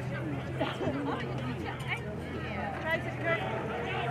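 Spectators' chatter: several voices talking over one another at a steady level, none of them clear enough to make out.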